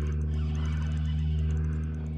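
A small motor humming steadily at a low pitch.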